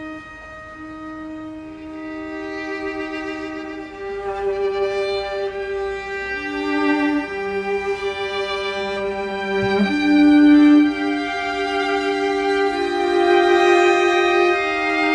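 String quartet of two violins, viola and cello playing long held notes with vibrato. It starts softly with a single line, other parts join, and it grows louder, loudest around ten seconds in.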